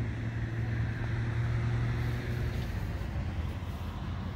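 A car engine idling: a steady, even low hum.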